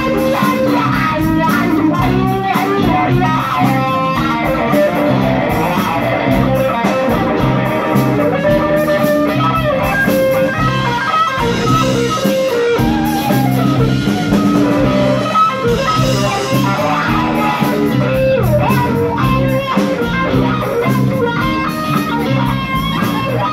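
Live rock band playing: electric guitar, bass guitar and drum kit at a steady level with no break.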